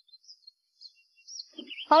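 A few faint, short, high bird chirps, one of them rising, scattered through the first second and a half. A voice starts right at the end.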